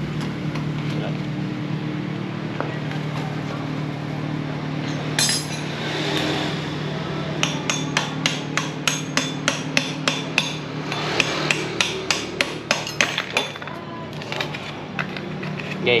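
A run of sharp knocks, about two to three a second, from roughly halfway in until near the end, typical of hammering on a part. A steady low hum runs underneath.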